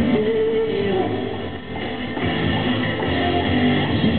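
Live upbeat pop-rock song with electric guitar and a male lead vocal, played loud through a PA system, dipping briefly about a second and a half in.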